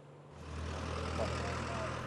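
Outdoor street ambience: a low, steady vehicle-engine rumble that fades in about half a second in.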